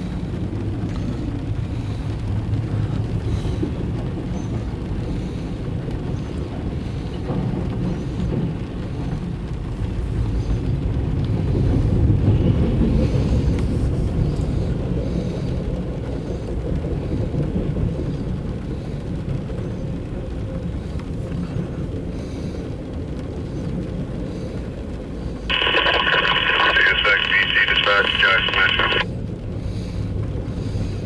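Loaded autorack freight train rolling past, heard from inside a car: a steady low rumble of wheels on rail that swells about ten to fifteen seconds in. Near the end a loud, narrow-band burst of about three seconds from the handheld railroad radio on the dashboard cuts in and stops abruptly.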